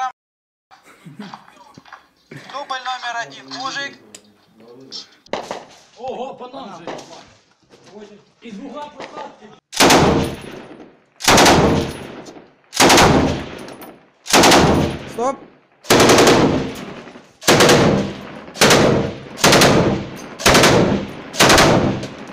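Belt-fed machine gun firing short bursts from inside a brick room, starting about ten seconds in and repeating about once every second and a half, each burst echoing off the walls.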